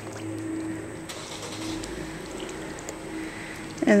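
A steady low mechanical hum, with a couple of faint splashes from fish flopping in the shallows.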